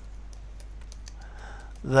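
Light key clicks of typing on a computer keyboard, a quick run of keystrokes through the first second or so.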